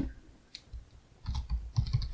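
Typing on a computer keyboard: a single keystroke about half a second in, then a quick run of several keystrokes in the second half.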